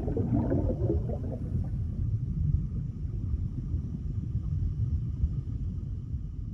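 Underwater bubbling sound effect: a steady low rumble, with bubbly gurgles over the first second or so.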